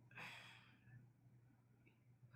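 Near silence, with one short, soft breath out near the start, over a faint low steady hum.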